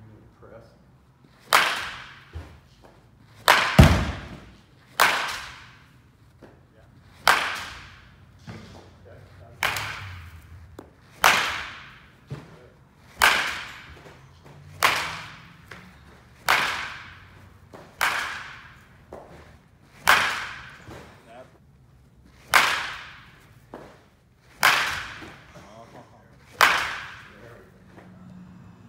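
A baseball bat hitting balls over and over: about fourteen sharp cracks, one every one and a half to two and a half seconds, each with a short ringing tail.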